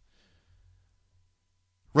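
Near silence: room tone with a faint low hum, in a pause between spoken remarks.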